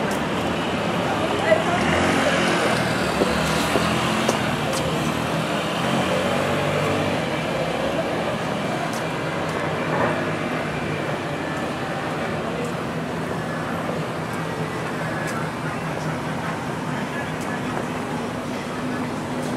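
Steady street traffic: cars moving slowly along a busy downtown street, with the voices of passers-by mixed in.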